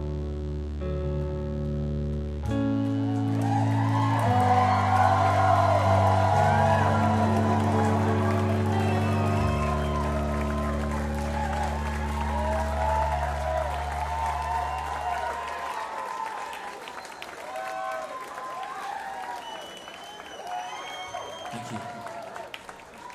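A band's last held chords, with sustained low keyboard and bass notes, ring out and fade away about two-thirds of the way through. From about three seconds in, a club audience applauds and cheers over them, with a few whistles near the end.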